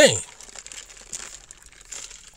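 A man's voice ends a word, then faint, irregular crinkling and rustling.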